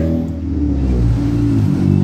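A motor vehicle engine running nearby, a steady low hum with a slight shift in pitch in the first second.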